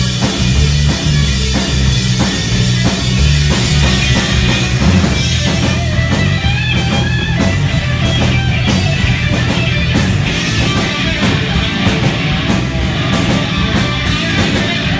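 Live rock band playing an instrumental passage: electric guitars, bass guitar and drum kit, loud and continuous with no vocals. A high wavering guitar line comes in about six seconds in.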